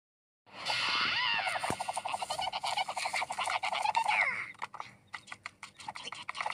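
Cartoon sound effects: a swooping whistle-like tone, then a fast rattling trill of about a dozen pulses a second, giving way to scattered sharp clicks near the end.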